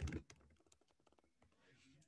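Computer keyboard typing: a quick run of key clicks, loudest in the first moment and then very faint.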